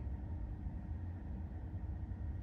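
Quiet car-cabin background: a steady low rumble with a faint hiss and no distinct events.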